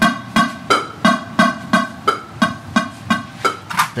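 Click track count-in from the show laptop: a steady metronome of short pitched clicks, about three a second, the cue the band counts in to at the start of a song.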